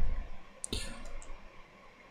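Computer keyboard keys clicking: a sharp click about two-thirds of a second in and a fainter one about half a second later.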